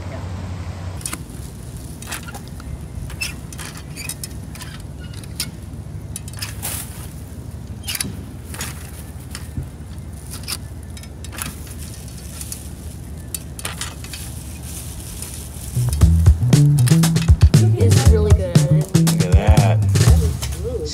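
Irregular clicks and crinkles of a reach grabber and a plastic trash bag as litter is picked out of a metal fire ring. About sixteen seconds in, louder music with a vocal starts.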